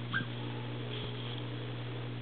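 A small dog gives one brief, high-pitched whimper just after the start, over a steady low hum.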